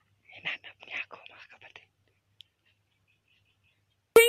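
A person whispering faintly for about a second and a half.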